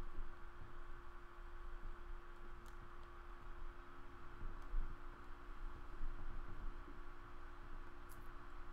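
Quiet room tone with a steady electrical hum, broken by a few faint clicks.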